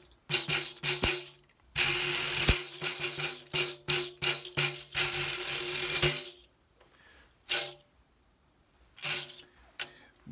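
Ludwig tambourine with a band of black 320-grit sandpaper on its head, played with friction rolls. A few short jingle strokes come first, then a sustained jingle roll of about four seconds, then two brief jingles near the end. The sandpaper gives the thumb or finger the grip it needs for the roll to speak reliably.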